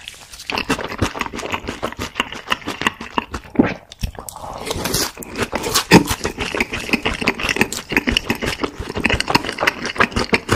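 Close-miked chewing of a mouthful of sauced fried chicken: a dense run of wet smacking and crunching clicks, with a few louder crunches along the way.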